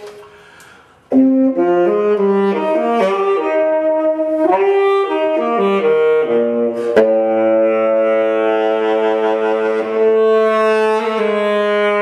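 Solo tenor saxophone playing an etude in a jazzy style. After a brief pause at the start comes a quick run of notes, then two long held notes from about 7 s on.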